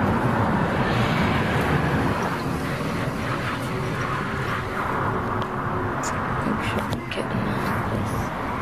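Steady road noise of traffic going by outside a car stopped at the roadside, with a few light knocks in the second half.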